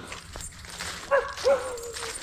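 Bernese Mountain Dog whining: two short high yelps about a second in, then a thin, steady whine.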